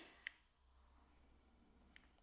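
Near silence: faint room tone with one brief, faint click about a quarter of a second in.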